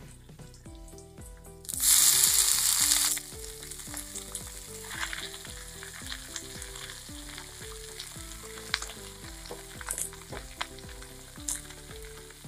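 Leafy saag greens dropped into hot oil with garlic and green chillies in an aluminium kadhai. There is a loud burst of sizzling about two seconds in that lasts about a second, then a steadier, quieter frying sizzle with a few light clicks.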